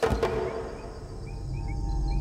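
Outdoor ambience at dusk: a low steady rumble that swells toward the end, with a few faint short chirps about two-thirds of the way in. A brief thud opens it.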